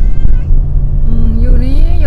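Steady low road rumble inside a moving car's cabin. In the second half, a drawn-out voice-like tone rises slowly in pitch.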